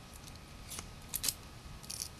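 A knife blade cutting into a wooden stick: a few short, crisp strokes, one about three-quarters of a second in, two close together just after, and one more near the end.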